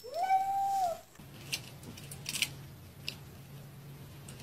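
A gray cat meows once: one call about a second long that rises in pitch and then holds steady. A few faint clicks follow.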